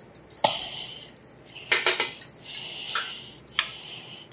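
Light clinks and taps of a steel spoon against steel plates and dishes while food is spread and served: one sharp clink about half a second in, a quick cluster around two seconds, and a few more near the end.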